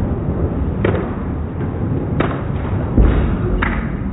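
Bowling alley lane noise: a steady low rumble, with sharp knocks about one, two and three and a half seconds in and a heavy low thud about three seconds in.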